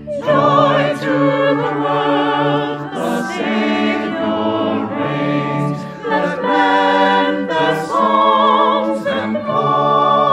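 Mixed choir of men's and women's voices singing a hymn with vibrato, accompanied by organ. The voices come in together right at the start.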